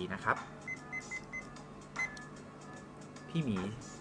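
Digital kitchen timer beeping at each button press: four quick short beeps about a second in, then one more a moment later, as a four-minute countdown is set and started.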